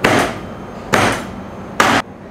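Butcher's cleaver chopping through the bone of a Chianina beef loin to cut off a bone-in steak: three sharp blows about a second apart.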